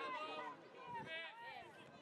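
Several voices shouting and calling out over one another during a youth football match, many of them high-pitched.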